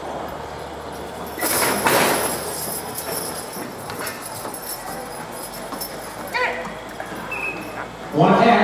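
Team of draft horses pulling a weighted sled across a dirt track: hooves clip-clopping and harness gear clinking, with a loud rush of noise about a second and a half in as the team takes up the load.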